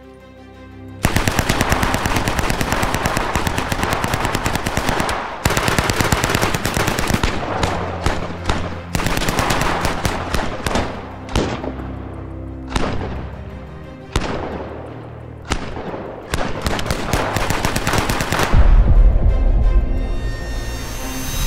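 Carl Gustaf m/45 (Swedish K) 9mm open-bolt submachine gun firing on full auto, at a cyclic rate of around 600 rounds a minute. Long bursts come in the first half and shorter bursts after. Background music runs underneath, and a deep boom comes near the end.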